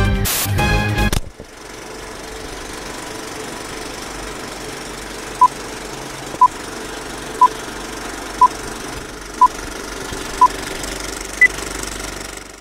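A music jingle cuts off about a second in, giving way to an old-film countdown leader effect: a steady whirring, rattling film-projector noise with six short beeps, one each second, then a single higher-pitched beep near the end.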